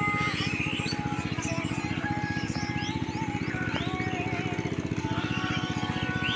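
A small engine running steadily with a fast, even beat, with short bird chirps over it.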